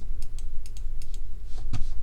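Computer keyboard and mouse clicking: a scatter of light, short clicks, about ten in two seconds, over a steady low hum.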